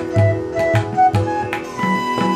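Tabla played with the hands, the metal bass drum giving deep strokes that bend in pitch, several a second, while a bamboo flute plays short notes and then holds a long note near the end, over a steady drone.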